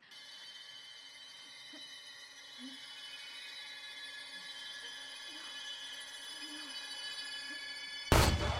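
Film sound-design drone: a high, shimmering cluster of steady tones that starts suddenly and slowly swells in loudness.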